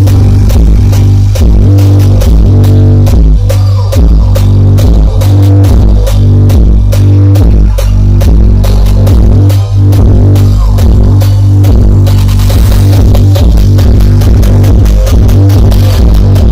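Electronic dance music played at high volume through a large stacked sound system of 21- and 18-inch triple-magnet subwoofers. Heavy bass dominates, in a steady repeating beat.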